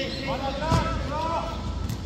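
Players shouting short calls during an outdoor futsal game, with a few sharp thuds of the ball on the hard court.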